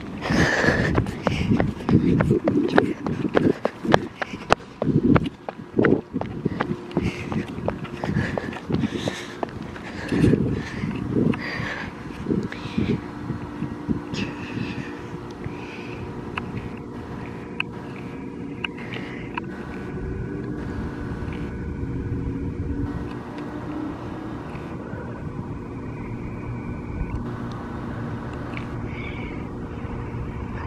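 Footsteps and handling knocks from a handheld camera being carried while walking, with a short laugh a few seconds in. After about twelve seconds the knocks thin out into a steady low hum with a few faint steady tones.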